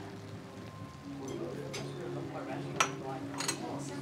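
A few light clinks of tableware, the sharpest about three seconds in, over faint steady low held tones.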